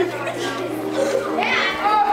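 Several children's voices talking and calling out, growing louder near the end.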